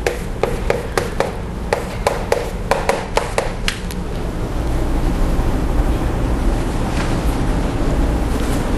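Chalk tapping and clicking against a blackboard while writing: a run of sharp, irregular taps for about the first four seconds, then only a steady low room hum.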